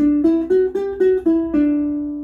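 Ukulele playing a single-note D major scale line, plucked in even eighth notes at about four notes a second and stepping up and down. The last note is held and rings out, fading.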